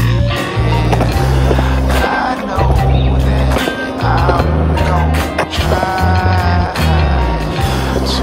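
Skateboard wheels rolling on concrete with sharp board clacks and impacts, under loud music with a heavy, steady bass line.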